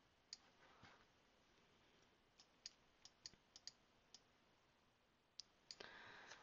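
Faint, scattered clicks of a computer mouse, about a dozen, several in quick pairs, starting about half a second in and growing denser near the end.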